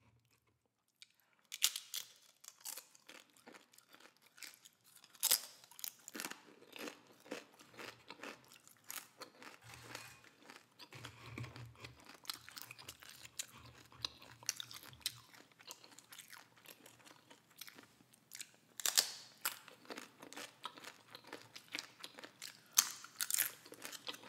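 Close-miked chewing and crunching of tortilla chips dipped in instant cup noodles. After about a second and a half of near silence, irregular sharp crunches run on with chewing between them, with several louder crunches, two of them near the end.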